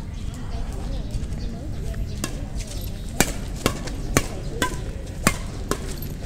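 Badminton rackets striking a shuttlecock back and forth in a fast rally: sharp, crisp hits start about two seconds in and come roughly every half second, about seven in all.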